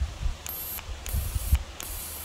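Black Beard electric arc (plasma) lighter firing in three short bursts, each a hiss with a thin, very high-pitched whine, with faint handling thumps between them.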